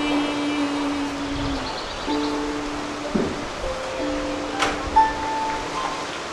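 Small wooden harp played solo: a held note at the start, then single plucked notes and chords struck about once a second and left to ring.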